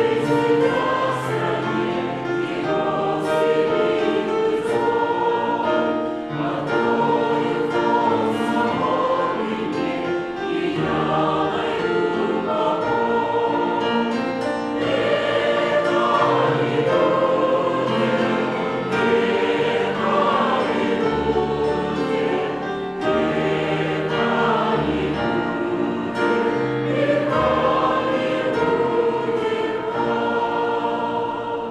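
A group of voices singing a Russian hymn in long, held notes, going through a verse and then into the refrain.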